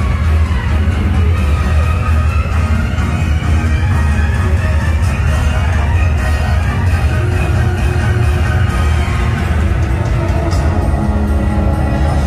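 Loud parade music playing from a passing dragon float's speakers, over a heavy, steady bass.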